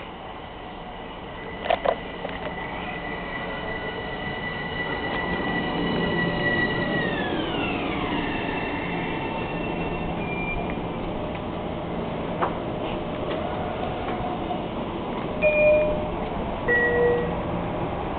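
Metro-North M7A electric multiple-unit train pulling in: its rumble grows louder as it approaches, and its high electric traction whine slides down in pitch as it brakes to a stop. Two sharp clicks come just under two seconds in, and two short chime tones sound near the end.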